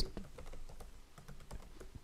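Computer keyboard typing: a quick run of faint key clicks.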